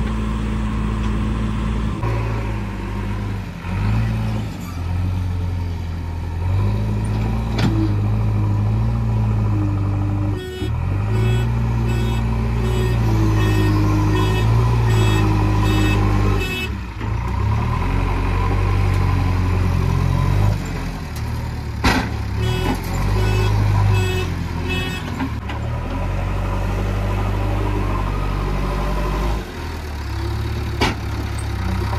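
JCB 3DX backhoe loader's diesel engine running and revving up and down under load as it digs and loads. A reversing alarm beeps steadily in two spells, about 10 seconds in and again about 22 seconds in, and there is a sharp knock about 22 seconds in.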